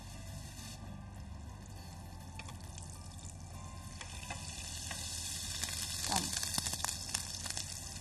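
Chicken burger patty sizzling as it goes into a frying pan of hot butter and oil, the sizzle growing louder from about halfway. A few light clicks of handling.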